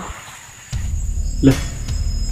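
A steady high insect drone, then about a third of the way in a low, dark background music bed comes in suddenly, with one short low voice-like sound near the middle.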